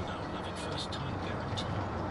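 Steady road and engine noise heard from inside a car at dual-carriageway speed, with faint speech running over it.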